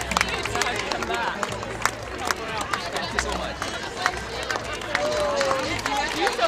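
Irregular hand claps from a line of people applauding up close, over the chatter of a crowd.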